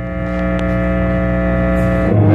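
Electric guitar through effects and an amplifier holding a steady, droning chord, with a low hum beneath it.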